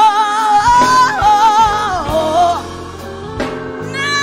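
A female gospel soloist sings a long, held note with vibrato that slides downward about two seconds in and fades, then starts a new phrase near the end, over live band accompaniment of keyboard and electric guitar.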